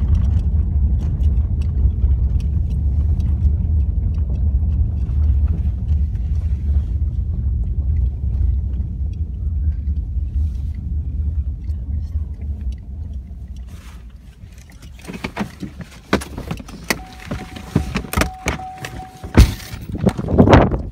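Road and engine noise inside a moving car's cabin, a steady low rumble that dies away about two-thirds of the way through as the car comes to a stop. Then a run of clicks and knocks from the doors and handling, with a steady electronic tone over the last few seconds.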